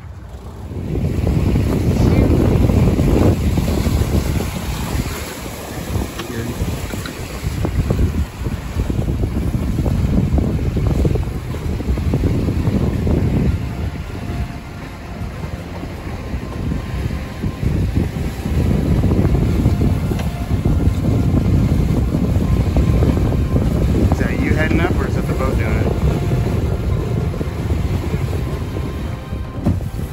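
Heavy wind buffeting the microphone aboard a small sailboat under sail, surging and easing with the puffs. A voice comes in briefly later on.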